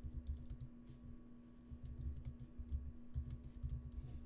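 Typing on a laptop keyboard: an irregular run of quick key clicks as a short comment is typed.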